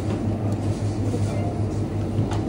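A steady low hum that holds at one pitch, with faint background noise over it.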